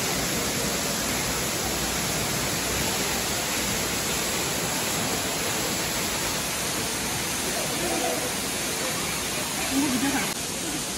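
A waterfall plunging onto rocks, making a steady, loud rush of falling water.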